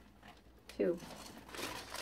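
A bag being handled: soft rustling and crinkling that picks up in the second half, after one short spoken word.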